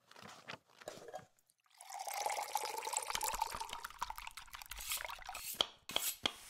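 Kitchen sound effects: a few short drips and clicks, then liquid pouring steadily for about four seconds.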